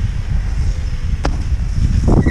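Steady low rumble of wind on the microphone as the chairlift carries the rider uphill, with one sharp click a little past halfway.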